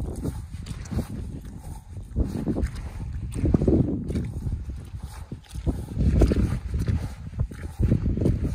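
Snow boots walking through wet, sticky mud and puddles, a squelching step again and again at a walking pace.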